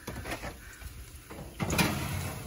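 An oven door being opened and its wire rack pulled out on the metal rails, with a louder scrape near the end.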